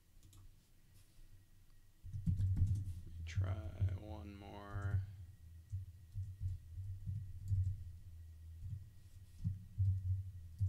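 Typing on a computer keyboard, with low thuds from about two seconds in. About three seconds in comes a brief wordless vocal sound with a falling pitch.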